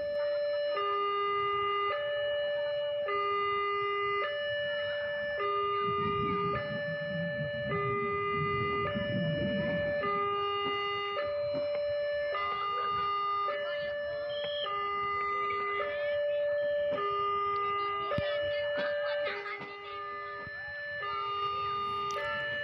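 Railway level-crossing warning alarm sounding a steady two-tone, high and low notes alternating about once a second, the signal that a train is approaching and the crossing is closing.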